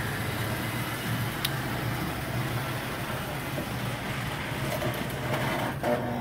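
American Flyer Royal Blue toy electric train running steadily on the layout track: a constant low electric-motor hum with wheel-on-rail noise and no chuff or smoke sound. One light click about a second and a half in.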